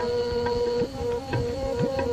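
Instrumental passage of a Punjabi folk song: a held melodic tone over hand-drum strokes about twice a second, some of the deep strokes gliding upward in pitch.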